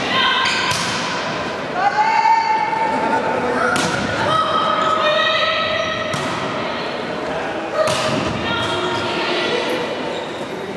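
A volleyball being struck again and again during a rally, with sharp slaps of the ball off players' arms and hands a second or more apart, echoing in a large gym. Players' voices call out over the hits.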